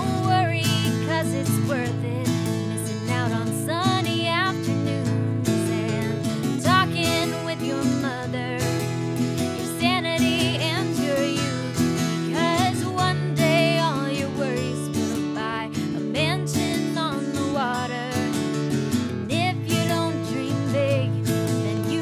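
Live acoustic song: two acoustic guitars strummed and picked together, with a woman singing the lead melody over them.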